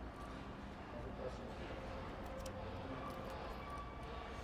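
Faint, light clicks and taps of metal parts being handled as a pipe and its gasket are fitted onto an engine, over a steady low room hum.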